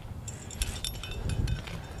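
Metal climbing gear clinking: a quick series of light, sharp metallic clicks from carabiners and a cam being handled in the crack, over a low rumble.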